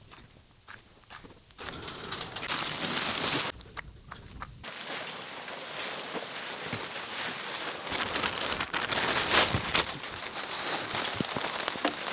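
Rain falling on a woven plastic tarp as an even hiss. It comes in after about a second and a half, dips briefly, then grows heavier toward the end.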